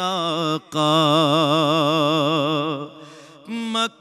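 A man reciting a naat in solo voice, holding one long melismatic note with a wide, regular vibrato for about two seconds after a quick breath, then a brief softer pause and a short note near the end.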